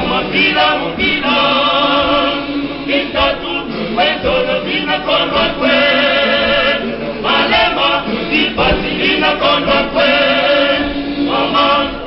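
Male choir singing a cappella in several voices, with a lead singer out in front; the phrases break off and start again every second or two.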